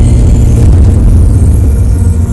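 Loud, deep rumble with a rough, noisy texture and no clear pitch, like a cinematic rumble or drone effect in a film soundtrack.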